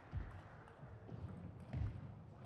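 Table tennis rally: players' shoes thudding on the court floor as they move, with light sharp clicks of the celluloid-type ball off rackets and table. The loudest are two low thuds, one just after the start and one near the end.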